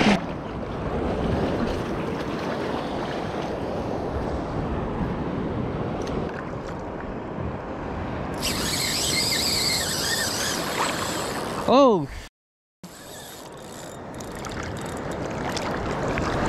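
Shallow surf washing steadily around a wader's legs. About eight seconds in, a higher wavering hiss joins for about three seconds. A brief falling pitched sound follows, then the audio cuts out for half a second.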